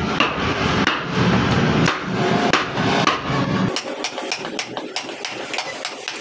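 A round wooden carver's mallet tapping the end of a carving gouge, driving it into a wooden door panel: a run of sharp knocks, about one a second at first, then quicker and lighter after an abrupt change in the sound a little past halfway.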